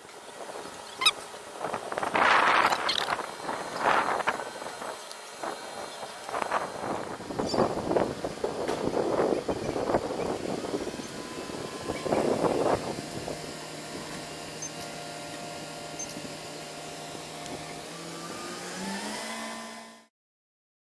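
A sharp click about a second in, then several loud, irregular bursts of noise through the first dozen seconds. After that a crane's engine runs with a steady low hum that rises in pitch near the end as it revs up.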